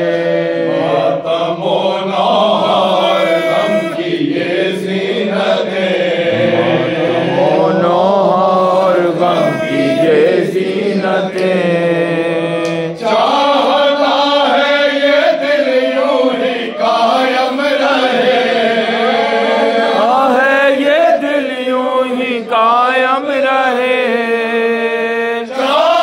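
A group of men chanting a noha, a Shia mourning lament, into microphones in a slow, wavering melody. A low note is held steadily underneath the melody and steps up in pitch about halfway through.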